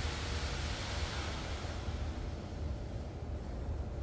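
A small hand tool scraping excess slip from the joint where a freshly attached handle meets a clay cup: a soft, even scratchy hiss that thins out about halfway through, over a steady low room rumble.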